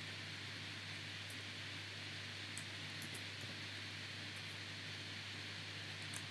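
Quiet room tone from the recording microphone: a steady hiss over a low constant hum, with a few faint short clicks near the middle.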